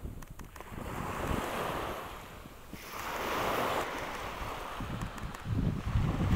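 Small ocean waves breaking and washing up the sand, swelling about a second in and again around three seconds in. Wind rumbles on the microphone near the end.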